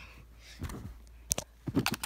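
Handling noise of plush toys being moved and bumped on a fabric couch, with a sharp click a little past halfway and a few quick knocks and rustles near the end.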